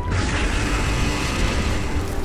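Cartoon sound effects of an explosion: a dense, continuous rumble with crashing debris and mechanical creaking and grinding.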